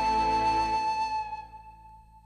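Wooden recorder holding one long high final note over a low accompaniment. The accompaniment stops a little under a second in, and the recorder note fades out about a second and a half in, ending the tune.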